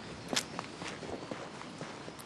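Footsteps on a paved lane: a sharper knock about a third of a second in, then softer, irregular steps over a low outdoor background.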